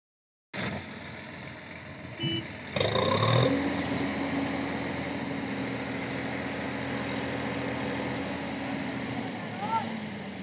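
Sonalika DI 50 tractor's diesel engine revving up about three seconds in, then holding a steady note under heavy load as the tractor strains to pull out of the deep mud it is stuck in.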